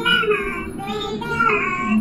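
A voice singing a melody over backing music.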